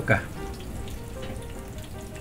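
Flour-dusted pork chops frying in oil in a stainless steel pan: a steady sizzle.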